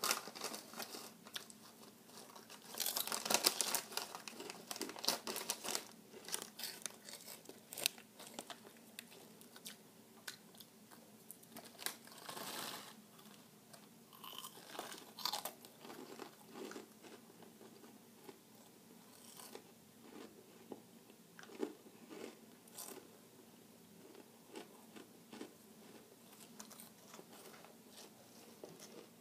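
Crunchy Flamin' Hot Cheetos being chewed close to the microphone. The crunching is loudest for a few seconds starting about three seconds in, then thins to scattered softer crunches. About halfway through, the chip bag rustles as it is tipped up to the mouth.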